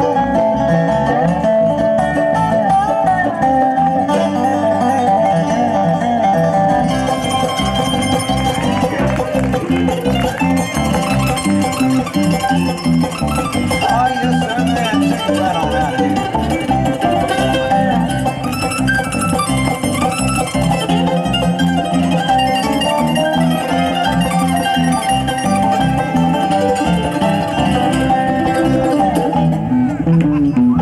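Live bluegrass band playing an instrumental stretch with a steady beat: dobro, mandolin, banjo and fretless electric bass.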